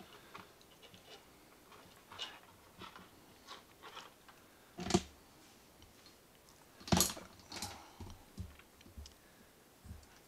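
Scattered small clicks and rustles of hands handling bare wire ends and multimeter test leads, with two sharper knocks, one about halfway through and another about two seconds later.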